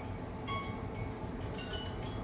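Faint chime-like tinkling: short single high notes at scattered pitches, a few each second, over a low steady hum.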